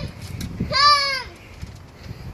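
A young child calls out "Daddy" once in a high voice, about half a second in.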